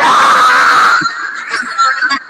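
A person screaming loudly into a phone microphone for about a second, then quieter broken yelling.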